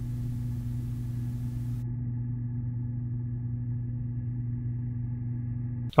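A steady, low, pitched hum that does not change. About two seconds in it turns duller as the high end drops away.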